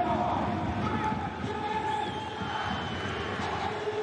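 Football stadium crowd: a steady din of many voices with a few long held notes, as of fans singing.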